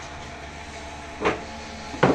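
A wooden sewing-machine box lid being handled by hand on a workshop floor, with one short wooden bump about a second and a quarter in, over a steady background hum.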